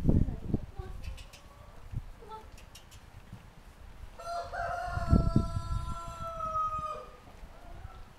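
A rooster crowing once: a single long crow of about three seconds, starting about four seconds in, wavering at first, then held and dropping slightly at the end. A few low thumps come at the start and around the middle of the crow.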